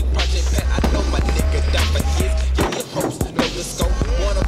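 Skateboard rolling and clacking on asphalt under a hip hop backing track. The track's heavy bass cuts out for about a second near the end.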